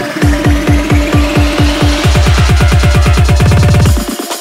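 Instrumental build-up of a UK bassline track: hard kick drums about four a second, doubling in speed about halfway into a fast drum roll, under a rising sweep. It all cuts off suddenly at the end.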